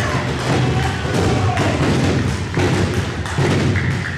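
Loud, dense, irregular thumps and knocks over a steady low rumble.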